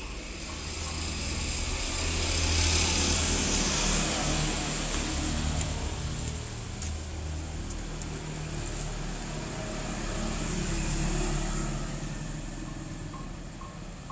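Motor vehicle traffic passing on a nearby street, picked up by a smartphone's microphone. The engine rumble and road noise swell to a peak a few seconds in, then again, less loudly, about three-quarters of the way through.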